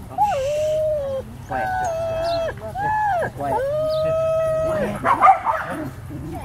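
Huskies howling: a series of long, steady howls about a second each, often starting with a glide in pitch, with two dogs overlapping at times. A short, louder outburst comes near the end.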